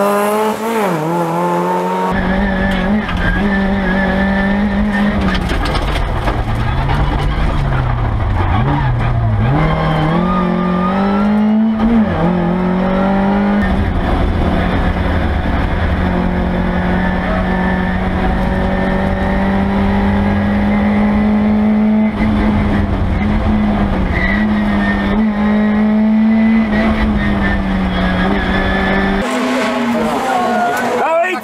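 Rally car engine heard from inside the cockpit at high revs over heavy road and cabin rumble. Its pitch dips and climbs a few times as the driver lifts off and changes gear, then is held mostly level for long stretches.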